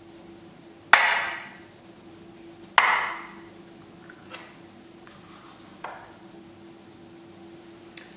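Glass thermometers knocking against glass beakers as they are set in place: two sharp clinks about two seconds apart, each ringing briefly, then two fainter taps.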